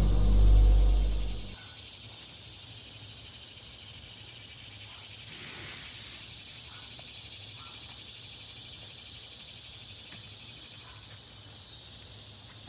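A deep boom fades out over the first second and a half. After it comes a steady high chirring of insects in woodland, with a few faint small ticks.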